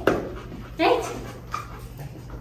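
Young golden retriever giving one short whine about a second in, after a sharp click at the start.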